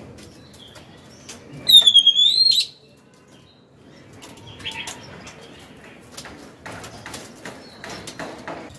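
Caged oriental magpie-robin whistling one loud, clear note about two seconds in that dips and then rises in pitch. After it come scattered light taps and wing flutters as the bird moves about the cage.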